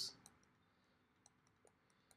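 Near silence with a run of faint clicks: a stylus tapping on a drawing tablet as a dashed curve is sketched.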